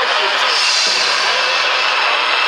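Superstock pulling tractor's turbocharged diesel engine running at the start line: a loud, steady hiss with a faint steady high tone.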